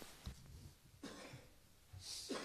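Near silence: faint room tone, with a soft low bump just after the start and a brief faint cough about a second in.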